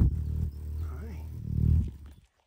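Hummingbird hovering right at the microphone, its wingbeats making a loud, steady low hum that stops near the end as it lands on the phone.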